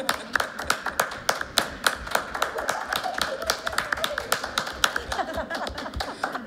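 A small group of people applauding in a meeting room: many separate, irregularly spaced hand claps from several people.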